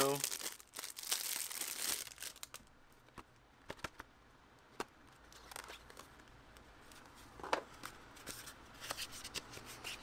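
Plastic shrink wrap crinkling and tearing as it is pulled off a cardboard knife box, loudest in the first two seconds. After that, quiet handling of the cardboard box with scattered light clicks and taps.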